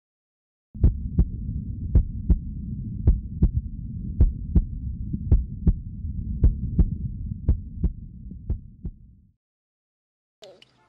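Heartbeat sound effect: slow double thumps, about one beat a second over a low rumbling drone. It starts about a second in and fades out near the end.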